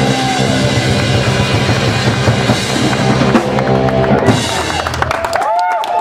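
Live rock band playing loud: drum kit with bass drum and electric guitars. The full band cuts off about five seconds in, at the end of the song.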